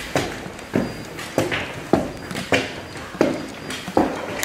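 Footsteps on a hard floor: a steady walking pace of about seven steps, each with a short ringing tail.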